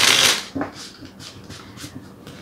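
A deck of tarot cards being riffle-shuffled: a loud burst of the two halves riffling together, then several short, softer card flicks as the deck is pushed back together.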